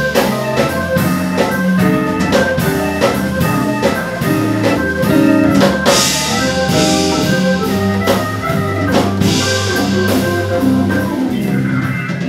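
Hammond organ playing jazz, with a drum kit keeping time and cymbals sounding behind it.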